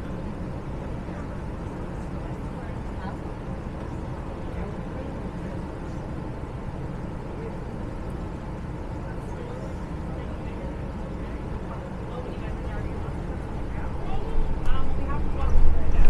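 Inside a city bus standing at a stop: a steady low engine hum with faint voices of passengers. About fourteen seconds in it grows much louder as the bus pulls away.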